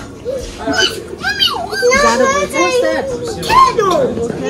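Young children's voices, talking and calling out in high voices that swoop up and down in pitch.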